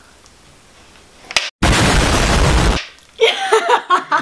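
A sudden, very loud boom-like blast of noise, cut in abruptly after a split second of dead silence about a second and a half in and lasting about a second: an explosion sound effect laid over the slime high five.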